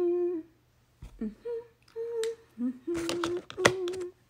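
A woman humming a string of short closed-mouth 'mm' notes at a few different pitches, with a couple of sharp clicks near the end.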